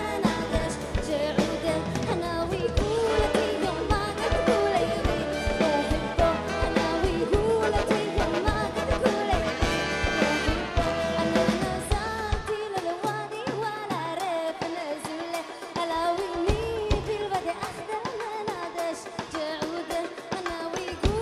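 Live funk band with a horn section of tenor sax, trumpet and trombone over drum kit, bass, electric guitar and keys, with a female lead voice singing. About twelve seconds in, the bass drops out, leaving the voice and upper parts for a few seconds.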